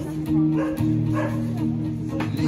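Live amplified pop-rock accompaniment: an acoustic guitar playing over a looped, sustained bass line, with no singing. Two short, sharp calls cut over the music, about half a second and a second in.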